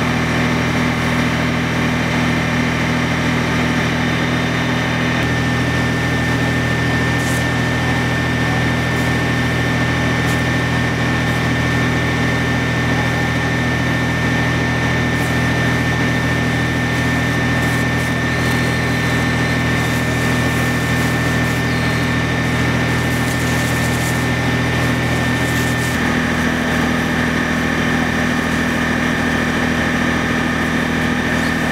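Fire engine running its water pump to supply the hoses: a steady engine drone with a thin steady whine above it. The sound shifts abruptly about five seconds in and again near the end.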